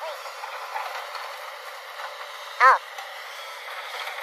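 JCB tracked excavator running steadily while it digs. About two and a half seconds in, a brief, loud pitched call cuts through.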